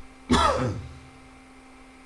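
A person clearing their throat once, about half a second long, with a falling pitch.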